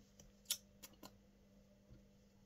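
Near silence with a faint steady hum and a few short, soft clicks, the loudest about half a second in and two weaker ones around a second in.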